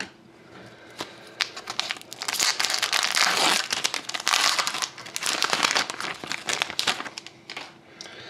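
A foil-wrapped pack of 2012-13 Upper Deck SP Game Used hockey cards being torn open and its wrapper crinkled by hand. The dense crackling starts about two seconds in and dies away near the end.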